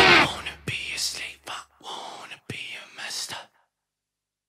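A rock song's last note cuts off and dies away within about half a second. Then come several short, quiet whispered voice sounds with a few faint clicks, stopping about three and a half seconds in.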